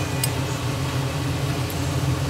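Steady low mechanical hum, with one light click just after the start.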